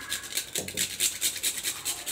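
Nutmeg rubbed on a small handheld metal grater, a fast run of short scraping strokes, about six or seven a second.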